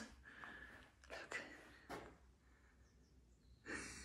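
Near silence: room tone with a few faint short knocks, then a breath drawn in near the end.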